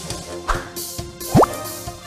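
Logo-animation sound effects over music: a short hit about half a second in, then a quick, loud, rising pop-like blip a little past the middle.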